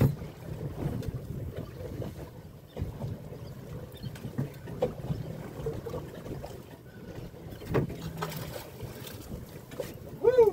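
Wind buffeting the microphone and water slapping against a small boat's hull, an uneven low rumble with a few faint knocks scattered through it.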